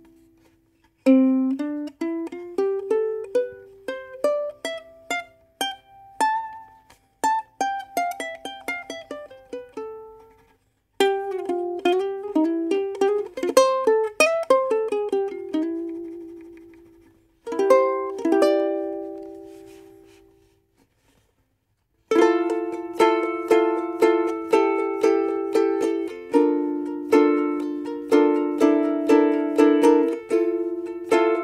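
Kanile'a Islander MSS-4 soprano ukulele played solo. The first half is picked single-note runs rising and falling, then a chord is left to ring out. From about two-thirds of the way in, steady rhythmic strummed chords follow.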